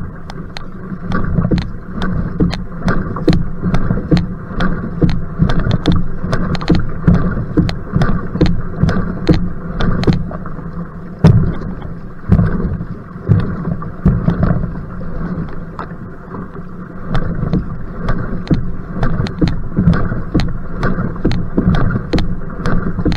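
Outrigger canoe paddle strokes: the blade catches and splashes through the water in a steady sprint rhythm, a little faster than one stroke a second, over a continuous rush of water and wind on the microphone.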